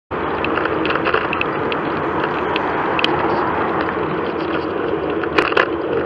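Steady wind and road noise picked up while riding a bicycle along a road with car traffic, with scattered light clicks and two sharper clicks about five and a half seconds in.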